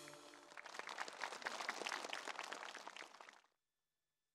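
Theatre audience applauding as the last of the music fades. The applause is cut off abruptly about three and a half seconds in.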